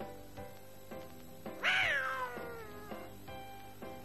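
Background music with a steady beat. About one and a half seconds in, a single drawn-out meow-like call rises briefly and then falls away, lasting about a second.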